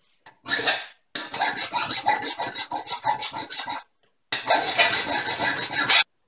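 Hand file rasping back and forth across a stainless steel steak knife blade clamped in a bench vise, reshaping the blade. A run of quick strokes, with a brief pause about four seconds in before it resumes.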